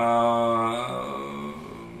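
A man's voice holding one long drawn-out wordless sound, a hesitation before speaking, that steps down slightly in pitch about a second in and fades.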